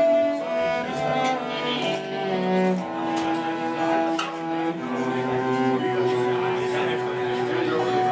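Cello bowed in a slow melody of long held notes, over acoustic guitar accompaniment.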